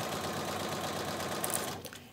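Electric sewing machine running at a steady speed, stitching a patchwork seam with rapid even needle strokes, then stopping near the end.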